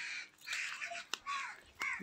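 A crow cawing a few short, hoarse times, with a couple of sharp clicks in between.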